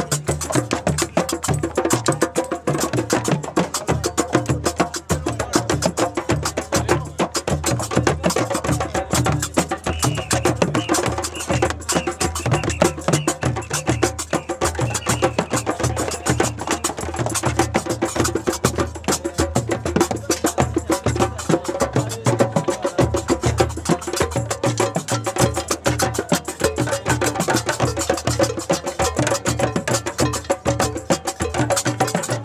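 Street percussion group playing: a djembe beaten by hand, with sharp wooden clacks on top, in a busy, continuous rhythm.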